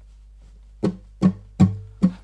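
Acoustic guitar (1997 Gibson Advanced Jumbo): three sharp, percussive bass notes, starting nearly a second in and about 0.4 s apart, each left to ring briefly. The strings are struck with the right-hand thumb used as a pick, the 'false plectrum' technique.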